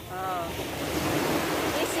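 Surf on a sandy beach: a wave washing in, a rushing noise that swells over about a second, with wind on the microphone.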